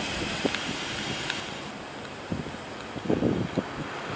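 Wind buffeting the microphone over steady outdoor background noise, with a few faint knocks.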